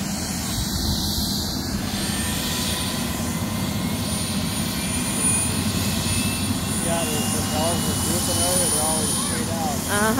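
Medical helicopter running on the ground ahead of take-off: a steady low rumble with a thin high whine that slowly rises in pitch.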